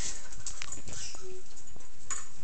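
Dogs lapping and splashing at a bucket of water, in irregular wet clicks and splashes, with one short dog whine a little after a second in.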